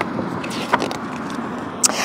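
Steady outdoor background noise, with a few light clicks and rustles from a paperback picture book's pages being handled and turned.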